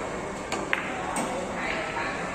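A cue tip strikes a carom billiard ball about half a second in, followed by two more sharp ball clicks within the next second.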